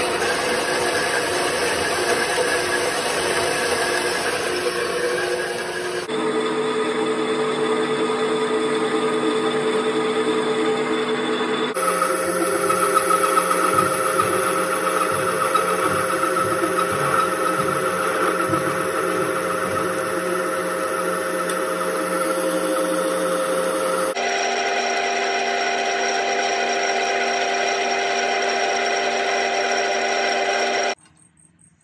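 Metal-working machine tools running in short clips cut together: a horizontal bandsaw cutting steel pipe, then a milling machine cutting a steel part, then a metal lathe turning a steel bar. Each clip is a steady machine whine, and the pitch changes abruptly three times where the clips are cut.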